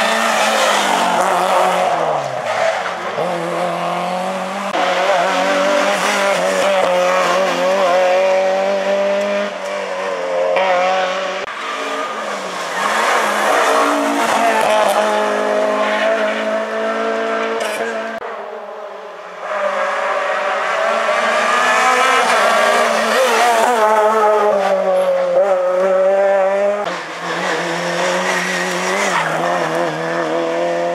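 Rally cars on a tarmac special stage passing one after another, each engine revving hard, its pitch climbing and dropping again through gear changes and braking into the bends. The sound jumps suddenly about two-thirds of the way through.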